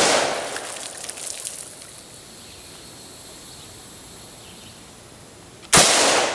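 Colt LE6940 AR-15 rifle in .223 firing: the echo of a shot dies away over the first second or so, then a second sharp shot near the end, the loudest sound, with its echo trailing off.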